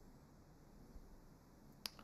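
Near silence: room tone, with one short sharp click near the end.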